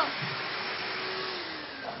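Vacuum cleaner running with a steady whooshing hum, the hum sinking slightly and fading near the end.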